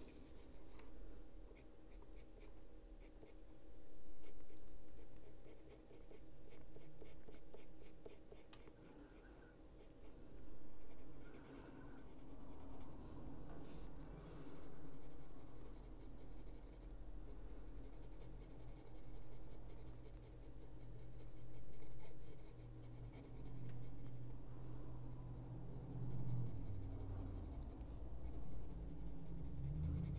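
Caran d'Ache Luminance coloured pencil scratching on drawing paper in repeated shading strokes, swelling and fading every second or two. A low hum comes in near the end.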